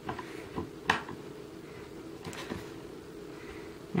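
A few faint clicks and one sharper tick about a second in as a hand screwdriver turns a screw into a particleboard bookcase side panel, over a steady low hum.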